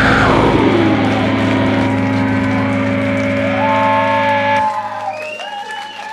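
A live rock band ending a song: a falling pitch slide, then the final chord rings out as a steady held tone and cuts off sharply about four and a half seconds in. Crowd cheering and whistling follows.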